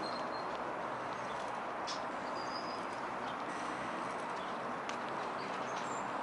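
Steady outdoor waterfront background noise, with a few faint short bird chirps.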